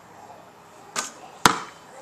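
A short rush of noise about a second in, then about half a second later a single sharp knock.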